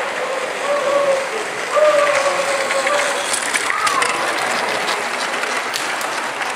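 Large-scale model train running along the layout's track, with a light clicking rattle from its wheels that is densest between about two and four seconds in. Distant voices in a hall are mixed in.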